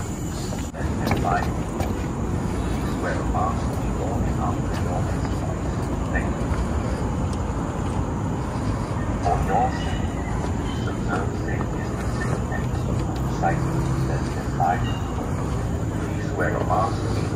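Steady outdoor rumble, with faint, indistinct voices now and then.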